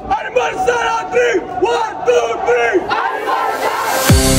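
A swim team huddled with hands stacked, shouting a team cheer together in a quick rhythmic chant of about two to three calls a second, which loosens near the end.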